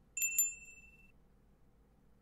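A small bell struck twice in quick succession, a bright ding that rings on for about a second: the bell cue used as the hypnosis trigger.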